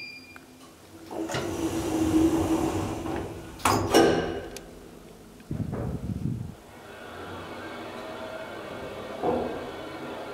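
Elevator doors sliding shut and closing with a loud clunk about four seconds in. Then a brief low rumble as the KONE hydraulic elevator car sets off downward, settling into a steady hum of the descent.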